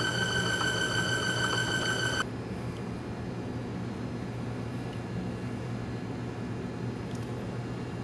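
Norton engine turning on an electric-motor-driven spintron test rig, giving a steady high whine over a low hum. About two seconds in, the whine cuts off abruptly and only a low steady hum remains.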